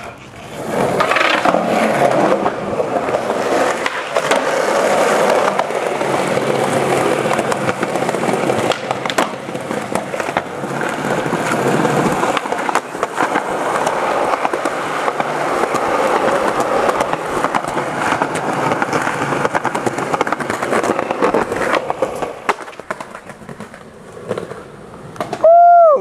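Skateboard wheels rolling on concrete, a steady rumble dotted with small clicks and knocks, that fades down a few seconds before the end. A loud shout comes right at the end.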